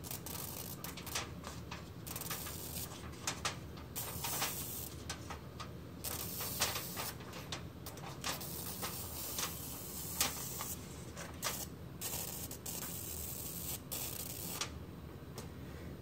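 Pencil lead wired to four 9-volt batteries in series (36 V) dragged across aluminum foil, scratching and sparking in irregular hissing, crackling bursts as it melts a cut through the foil.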